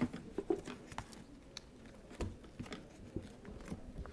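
Pages of a paperback book being leafed through close to a microphone: scattered soft rustles and small clicks of paper.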